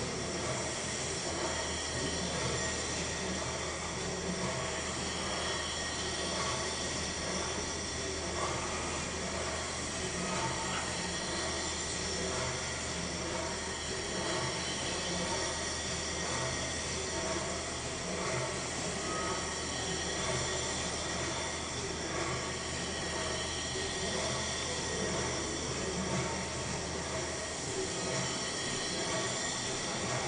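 Triple-expansion stationary steam pumping engine turning over on compressed air instead of steam, running steadily with an even mechanical noise from its moving parts.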